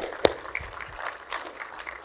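Two sharp clicks, one at the start and one about a quarter second later, then low, steady room noise in a large hall.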